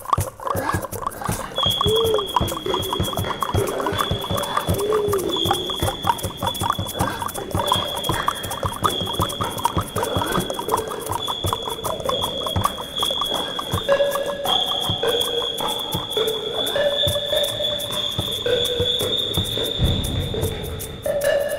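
Traditional indigenous Guatemalan music: a high, steady whistle-like line held in long notes with short breaks, over a fast, even run of short percussive strokes, with a lower stepping melody joining about fourteen seconds in.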